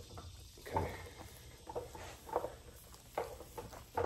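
An extension cord being coiled around an arm, its jacket rubbing and brushing in a few short, faint rustles as each loop is drawn over.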